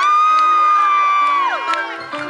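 A long, high held whoop that glides up at the start and falls away about one and a half seconds in, over upbeat dance music.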